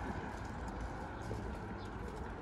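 Steady outdoor city background: wind rumbling on the microphone over a general hum of distant traffic.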